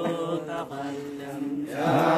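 Devotional qasiido chanting in praise of the Prophet Muhammad, with long held, gently wavering vocal notes; the singing swells louder near the end as the next line begins.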